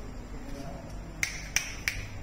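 Three sharp finger snaps, about three a second, starting a little past the middle, over a faint murmur.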